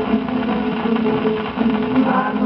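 78 rpm shellac record of a 1940 samba-canção playing on a turntable: the regional ensemble's instrumental accompaniment continues between sung lines, with held notes over the record's surface noise.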